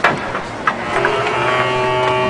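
Clarinet playing long held notes from about a second in, stepping from one pitch to the next. A sharp knock comes right at the start, with a smaller click just before the notes begin.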